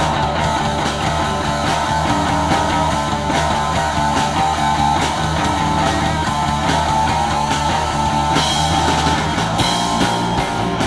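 A live rock band playing an instrumental passage: electric guitars, bass and a drum kit, with no singing.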